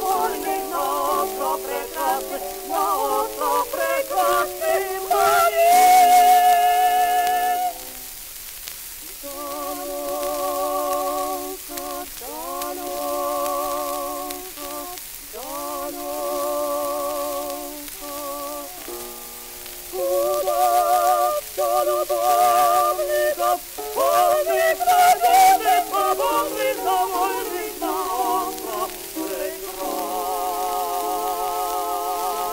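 Early acoustic recording of a tenor and a soprano singing an operatic duet, with a wide vibrato on held notes. It is loud at first, drops to a quieter passage from about eight seconds in, then swells again about twenty seconds in. Surface crackle of an old record runs under it.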